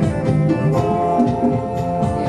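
Live band music: plucked strings over held, sustained tones, with low notes moving in a steady rhythm.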